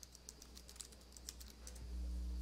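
Computer keyboard typing: a run of light, irregular key clicks as a command is entered into a terminal. A low steady hum comes up near the end.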